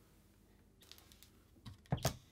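Faint scattered clicks and small taps from painting supplies being handled, with a sharper knock just before the end.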